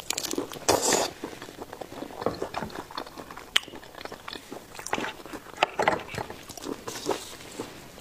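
Close-miked ASMR eating sounds of chewing raw shrimp: irregular wet mouth smacks and small clicks, louder near the start as the bite goes in.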